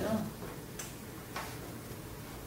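A short spoken 'ne' at the start, then two light clicks about half a second apart in a quiet room.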